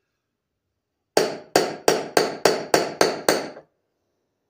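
Eight quick hammer blows, about three a second, each with a short ring, driving a new ball bearing into a riding lawn mower's front wheel hub. The bearing is going in on one side but not the other.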